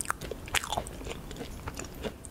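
A person chewing a bite of espresso macaron close to the microphone, with a few short crackles of the shell.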